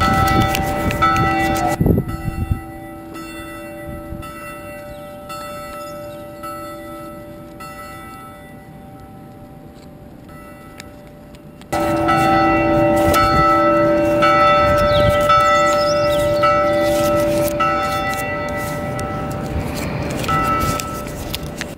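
Bells ringing, with many strikes whose tones hang on and overlap. A low rumble sits under the first few seconds and again from about halfway. In between, the ringing is quieter and clear.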